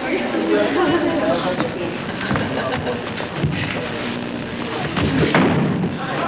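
Grappling wrestlers' bodies thudding on the studio floor several times, the last and heaviest near the end as one is taken down, over a murmur of voices.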